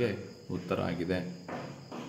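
A man's voice speaking briefly in short phrases, with a faint, steady, high-pitched chirring in the background throughout.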